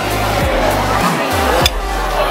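Background music with a deep bass line and regular drum hits, with voices mixed in.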